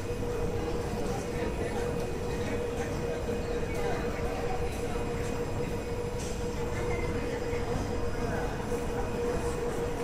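A Kawasaki C151 metro train standing at the platform with its doors closed: a steady low rumble and one constant mid-pitched hum, with no change in pitch.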